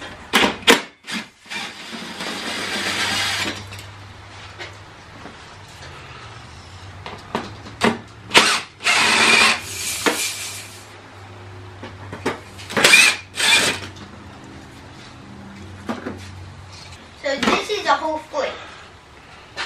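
Cordless drill/driver backing out the bolts that hold a Harley-Davidson batwing fairing's windshield. It runs in several short spurts of one to two seconds, with clicks of handling in between.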